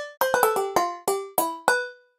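Sampled handbells (the Bolder Sounds Handbells V2 clapper patch) played as a quick run of about eight short notes at varying pitches. Each note is damped soon after it is struck, giving short staccato notes.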